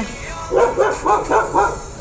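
Dog barking about four times in quick succession.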